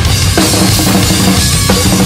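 Metal drum kit played hard and fast, with kick drum and snare driving through, over the band's recorded song with its low guitars and bass.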